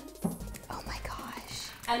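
Soft, indistinct talking over light background music.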